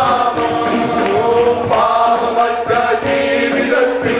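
Several men singing a Malayalam worship song together through microphones and a PA, holding long, sliding notes over keyboard accompaniment with a steady beat.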